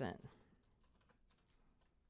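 Faint computer keyboard typing: an irregular run of light key clicks as a word is typed and a typo corrected, just after the tail of a spoken word.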